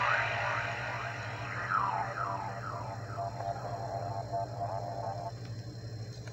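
Synthesized sound of the Laser Pacific DVD encoding logo, played through a TV speaker: a run of quick falling swoops, then a held tone that stops about five seconds in, over a steady low hum.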